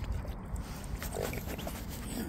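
Mute swans feeding with their bills in shallow water, with one short animal sound from them a little over a second in.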